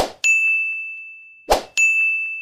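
Sound effects of an animated subscribe/like/share end screen: twice, a short click-like hit followed by a bright bell-like ding that rings down over about a second.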